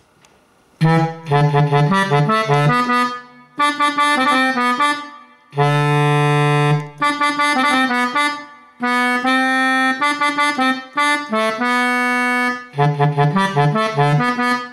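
Sampled Gabbanelli button accordion on its bassoon register, played from a Korg keyboard. It plays short phrases of quick notes over low notes, with brief pauses between them and a long held chord about six seconds in.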